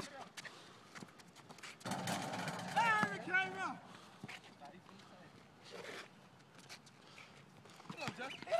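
A person's voice calling out briefly about three seconds in, with faint scattered taps and knocks the rest of the time.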